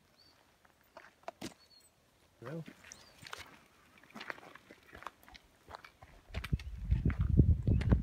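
Footsteps crunching on a gravel path: scattered crunches at first, then louder and denser from about six seconds in, with a heavy low rumble.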